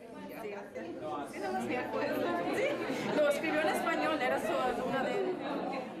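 Several people talking at once in a classroom: overlapping chatter that swells in over the first second or so and eases slightly near the end.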